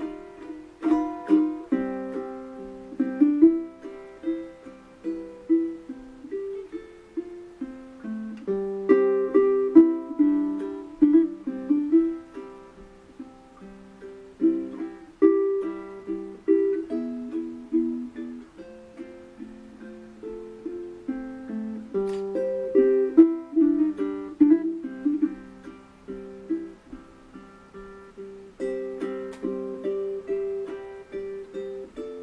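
Custom Lichty tenor ukulele with a sinker redwood top and Brazilian rosewood back and sides, played solo fingerstyle: a plucked melody line over chords, each note ringing briefly.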